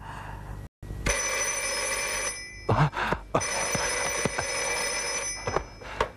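Desk telephone ringing twice, each ring a steady, high electric tone lasting one to two seconds, with a short pause between.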